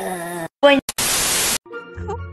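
A flat burst of static hiss about half a second long, about a second in, cut off sharply: a TV-static transition effect between clips. Before it, a voice ends; near the end, faint music begins.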